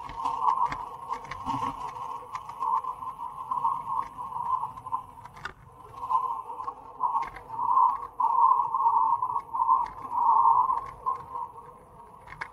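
Road bike descending at speed: a steady buzzing hum from the bike that swells and fades, louder in the second half, with light clicks and rattles.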